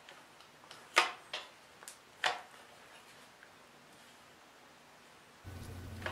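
Irwin Quick-Grip bar clamps being squeezed tight on a Kydex forming press: four sharp clicks from the trigger handles within about a second and a half, starting about a second in.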